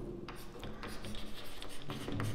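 Chalk writing on a chalkboard: a run of short scratching strokes and light taps as letters are written.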